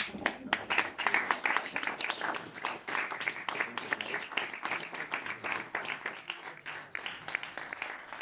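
A small group applauding in a room: many separate hand claps, dense and uneven, with no break.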